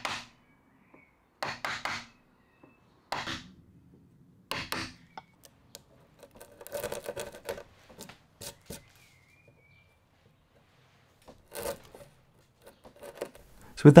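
Steel wood chisel cutting into softwood, chopping and paring out the waste of a hinge mortise. It comes as short separate strokes about every second and a half, with a quicker run of strokes around the middle.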